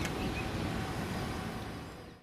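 Steady outdoor background noise with a rumbling low end, like wind on the microphone, fading out near the end.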